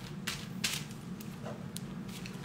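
Faint scratching and crinkling of aluminium foil as a tint brush paints lightener onto a foiled section of hair: a few short scrapes over a low steady hum.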